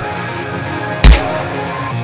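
Film soundtrack music with a single sharp punch hit, heavy and deep, about a second in.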